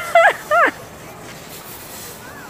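Two quick, high-pitched human yelps within the first second, each dropping in pitch at the end, let out during a champagne-spraying fight.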